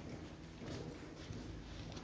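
Quiet room noise with a few faint, scattered taps and knocks.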